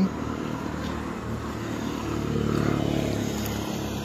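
Road traffic passing close by: a motor vehicle's engine and tyre noise that builds toward the middle and then fades.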